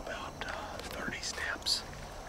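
People whispering in short, hushed phrases.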